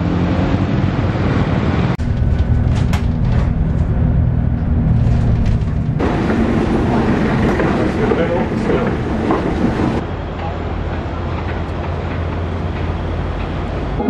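Street traffic and Underground station ambience: a steady low rumble with murmuring voices, changing abruptly about every four seconds.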